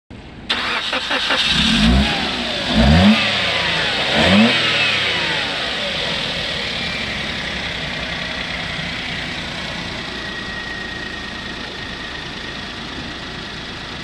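Suzuki Alto's 1.0-litre three-cylinder petrol engine starting about half a second in, then revved three times in quick succession before it settles to a steady idle.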